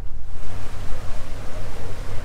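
Wind and water noise on the deck of a sailing catamaran under way: a steady low rumble with a rushing hiss that swells about half a second in.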